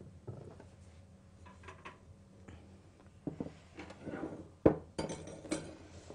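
A wire cooling rack and plates being handled and set down on a kitchen counter and cake pan: scattered light clinks, one sharp clatter a little under five seconds in that is the loudest sound, then a few lighter knocks.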